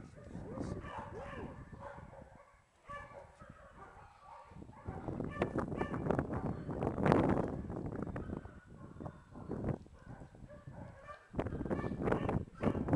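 Small fluffy dogs making short, whiny rising-and-falling calls while being stroked, with a louder rush of noise about seven seconds in.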